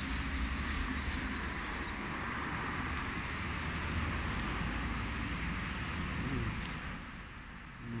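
A motor vehicle's engine running nearby, a steady low rumble that fades away about seven seconds in.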